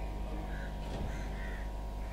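A steady low hum, with a few short harsh calls above it about half a second and a second in.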